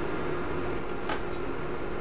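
Steady background hum of room noise, like a fan or air conditioner running, with one faint click about a second in.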